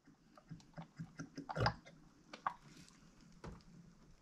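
Light, irregular knocks and clicks from a plastic oil jug and funnel being handled over an engine's oil filler, the loudest knock about one and a half seconds in.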